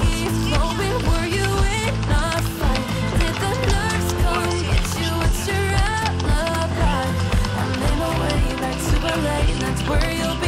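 Background music: a song with a steady beat.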